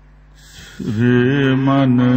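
A man chanting a line of Gurbani in a drawn-out, held tone that begins about a second in, after a brief low hum.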